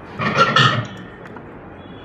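A person's short, loud vocal sound lasting about half a second, shortly after the start.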